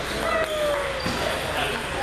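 Celluloid-style table tennis balls clicking off paddles and tables at several tables in a gymnasium, with voices in the hall.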